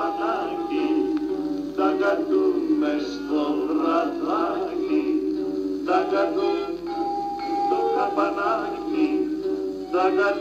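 Old Greek popular song recording: men's voices singing a melody over a steady guitar accompaniment, with a long held note near the end.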